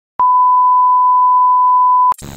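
Broadcast test tone of the kind that goes with TV colour bars: a single steady beep at one unchanging pitch, starting with a click just after a moment of silence and holding on.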